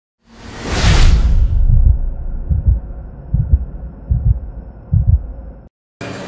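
Cinematic intro sound effect: a whoosh over a deep low rumble, then four deep low thuds evenly spaced under a second apart, like a slow heartbeat, cutting off suddenly just before the end.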